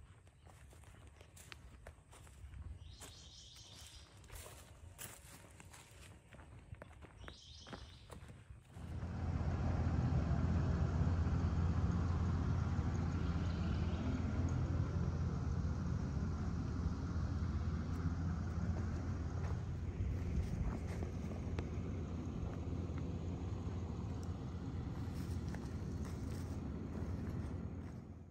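Footsteps and light crunching on cleared forest ground. About nine seconds in, a steady low-pitched diesel engine sound comes in abruptly and runs evenly at idle, typical of heavy construction equipment.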